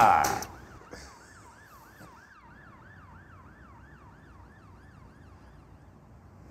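A faint emergency-vehicle siren in a fast yelp, its pitch sweeping up about three times a second, dying away after three or four seconds.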